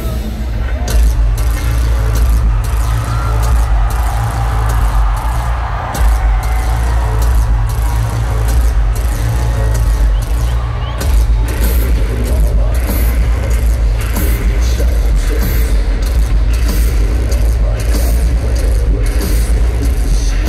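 Arena concert sound between songs: a steady, deep bass drone from the PA, with crowd noise and shouting over it.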